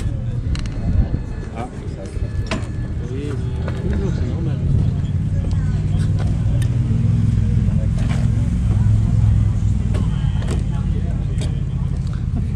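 A motor vehicle's engine running steadily, a low rumble that grows louder about four seconds in, with a few sharp knocks and brief voices over it.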